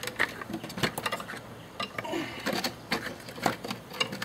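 Folding metal leg frame of a 1998 Honda CR-V's spare-tire-lid camping table being unfolded by hand: a string of irregular clicks and rattles of metal tubing against the plastic lid.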